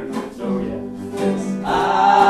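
Two acoustic guitars strumming chords, with several male voices coming in together, singing loudly, near the end.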